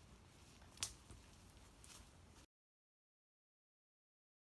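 Faint rustling and scuffing of someone moving about in forest undergrowth, with one sharp click about a second in. The sound then cuts off suddenly to dead silence about halfway through.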